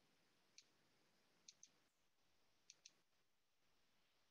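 Near silence with five faint, sharp clicks: a single one about half a second in, then two quick pairs, around one and a half seconds and near three seconds.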